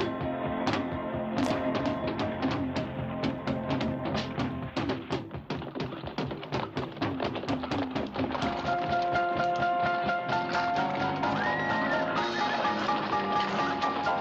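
Western film score with a fast, even clatter of horses' hoofbeats on rocky ground, several strikes a second; sustained musical tones grow stronger about halfway through.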